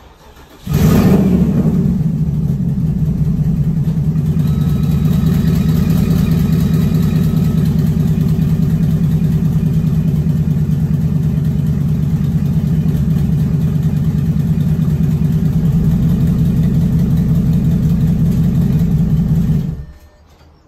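The Porsche Cayenne S's 4.8-litre V8 starts about a second in, then idles steadily. It stops abruptly near the end.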